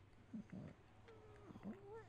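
Near silence, with a few faint short sounds and a faint gliding tone in the second half.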